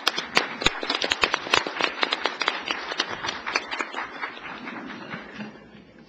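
An audience applauding, the clapping fading away near the end.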